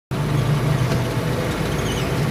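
Steady engine hum and road noise heard from inside a moving vehicle driving on asphalt.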